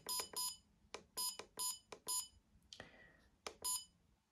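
A usogood TC30 trail camera giving a short, high electronic key beep at each press of its menu button, about eight in all, some in quick succession, as the selection is stepped through the settings list. Faint button clicks come between the beeps.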